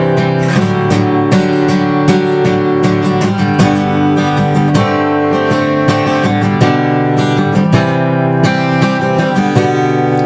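Steel-string acoustic guitar strummed in a steady rhythm, open chords played without a capo.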